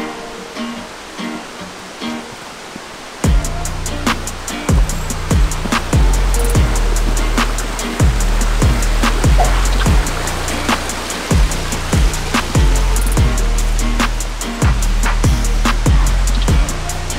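Background music: a light plucked-string tune, joined about three seconds in by a steady drum beat with a deep bass drum that carries on to the end.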